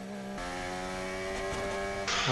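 Formula 1 car's V6 turbo-hybrid engine running at steady revs, one even droning note, with a hiss joining about half a second in.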